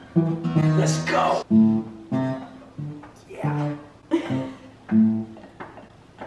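Acoustic guitar being strummed, chords struck about once a second and each ringing out and fading, with a voice breaking in over it.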